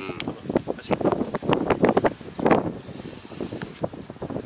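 Wind buffeting the microphone in irregular gusts, over the running and clatter of a tractor-pulled Kobashi GAIA levee-forming machine shaping a paddy bank.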